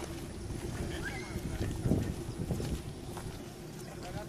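Wind rumbling on a handheld microphone, with indistinct voices in the background.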